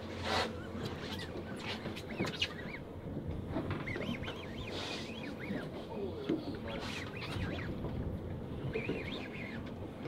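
Quiet background aboard a fishing boat: a low steady hum with faint, scattered voices and light clicks.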